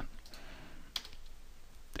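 A single faint keystroke on a computer keyboard about a second in, over low room noise.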